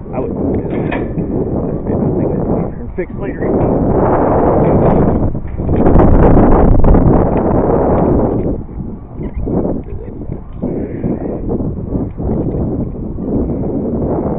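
Wind buffeting the microphone of a climber's camera high on a tower, a loud rumbling rush that swells and fades in gusts, strongest around the middle.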